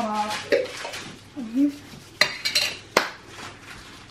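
Kitchen tableware clinking: two sharp clinks of dishes and cutlery, about two seconds in and again near three seconds, with brief voice sounds in the first half.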